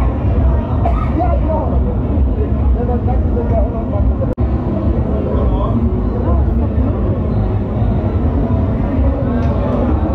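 Busy street ambience: indistinct voices over a steady low rumble. The sound drops out briefly about four seconds in.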